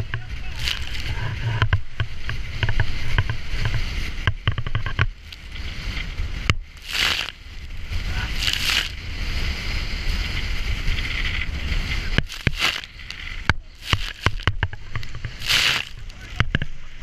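Robalo powerboat running through rough, choppy water: a steady low rumble under repeated splashes of spray and waves against the hull, with loud surges about a second in, around seven and nine seconds, and near the end, and a run of sharp slaps and clicks a few seconds before the end.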